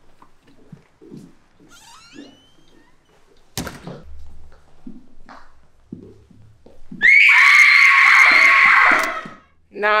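A child's loud, high-pitched scream, lasting about two and a half seconds and starting about seven seconds in, a pretend scream of fright put on as a prank. Before it come low hushed voices and a single sharp knock.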